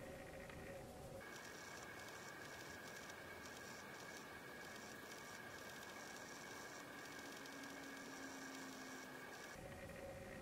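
Quiet room tone: a low hiss with a faint steady high-pitched whine that switches on about a second in and cuts off near the end.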